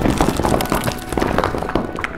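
A rapid, irregular clatter of many quick knocks and taps.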